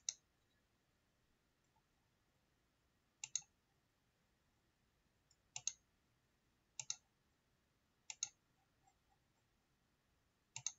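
Computer mouse button clicked five times, a few seconds apart, each click a faint quick double tick of press and release.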